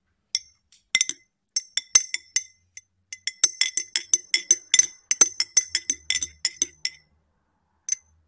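A spoon stirring tea in a ribbed glass tumbler, clinking against the inside of the glass with a bright ringing tone. There are a few scattered clinks at first, then quick, even clinks of about four or five a second from about three and a half seconds in. A single clink comes near the end as the spoon is lifted out.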